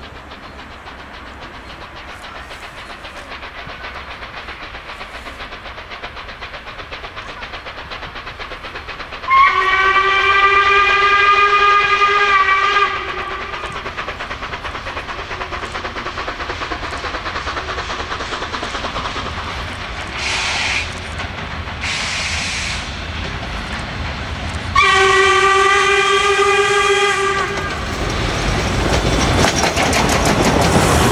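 Steam locomotive 464.102 approaching, blowing its steam whistle in two long steady blasts of about three seconds each, the first about nine seconds in and the second near 25 seconds. Two short hisses come in between. The running noise of the train on the rails grows louder toward the end as it comes close.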